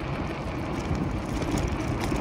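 Moving e-bike on asphalt: wind buffeting the microphone and tyre rumble, with a faint steady hum underneath.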